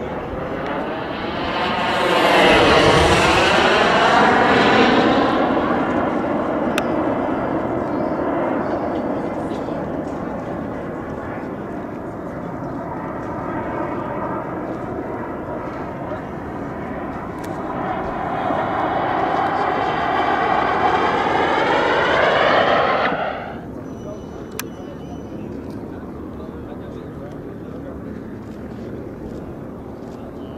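Model jet's turbine engine whining as it flies past overhead, the pitch sweeping down as it passes about two seconds in. It keeps running more quietly, then grows loud again and cuts off suddenly about two-thirds of the way through.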